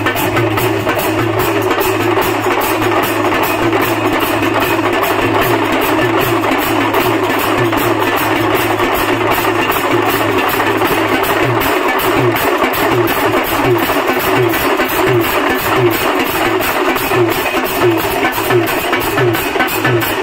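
A percussion group plays a loud, fast, driving rhythm on large brass hand cymbals (jhanj) and drums. About halfway through, a low steady hum gives way to a regular deep beat.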